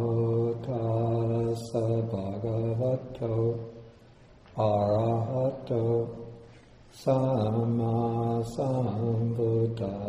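Buddhist devotional chanting: a low male voice recites on a near-steady pitch in three long phrases separated by short pauses.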